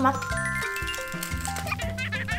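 Background music with held notes over a steady bass line.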